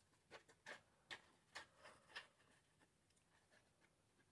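Faint, quick ticks and taps of a glue bottle's nozzle dabbing glue onto the back of a piece of card, about six in the first two seconds, then near silence.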